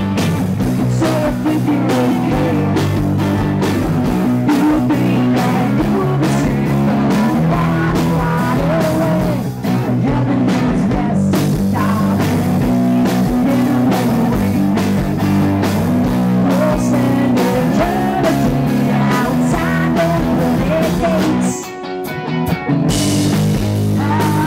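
Live rock band playing loud, with electric bass, electric guitar and drums and a woman singing. Near the end the band drops out for about a second, then comes back in.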